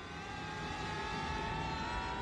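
Film soundtrack of objects hurtling through the air: a held chord of tones, rising slowly in pitch over a rushing noise and growing louder.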